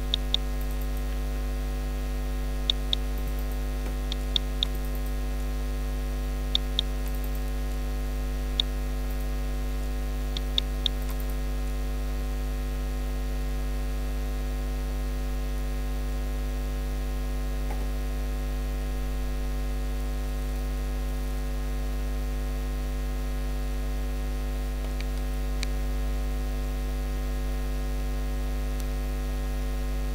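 Steady electrical mains hum picked up by the recording microphone. Over the first ten seconds or so there are a few sharp computer-mouse clicks, several of them in quick pairs like double-clicks.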